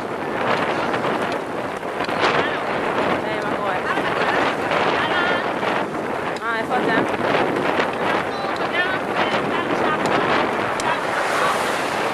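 Wind rushing over the microphone of a camera carried on a moving road bicycle, a steady loud roar, with faint speech beneath it.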